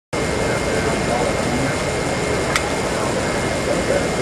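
Steady rushing noise of a busy exhibition hall, with indistinct voices in the background and a single sharp click about two and a half seconds in.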